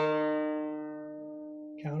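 The fourth (D) string of a 5-string banjo, plucked once and left to ring, fading slowly at a steady pitch. The string is tuned well sharp of D.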